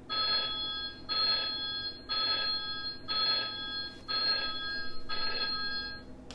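Smartboard countdown timer beeping once a second through its last six seconds to zero, six electronic chime-like beeps, each held for most of a second.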